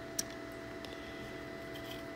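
Quiet room with a faint steady hum, broken by one light click about a fifth of a second in and a few fainter ticks: a die-cast 1/64 toy truck being handled against a plastic toy car-hauler trailer.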